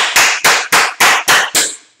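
A man clapping his hands in a steady run of sharp claps, roughly three a second.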